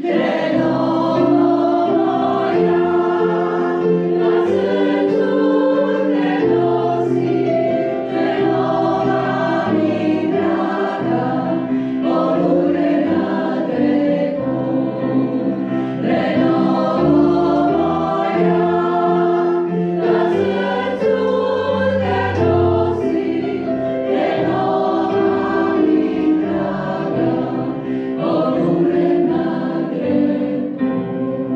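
A women's choir singing in parts, with keyboard accompaniment, sustained chords changing every few seconds.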